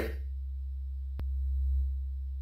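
A low steady hum, a little louder in the second half, with a single sharp click a little past a second in.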